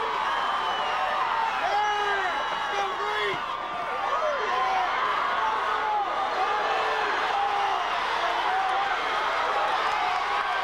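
Football stadium crowd: many voices shouting and cheering at once, a steady mass of overlapping calls with no single speaker standing out.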